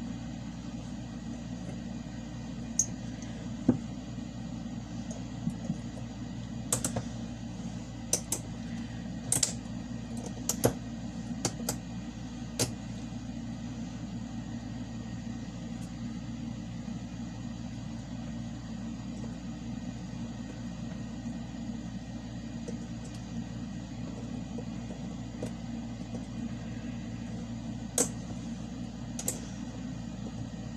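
Scattered short, sharp metallic clicks and snaps of a hand tool prying nickel-strip tabs off the cells of a lithium battery pack: about ten in the first half and two more near the end. A steady low hum runs underneath.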